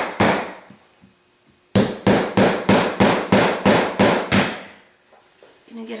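Hammer blows on a nail being driven through a smashed iPod touch into a wooden block: one blow, a pause of about a second, then an even run of about ten sharp strikes, roughly three a second, as the nail is forced to go all the way through.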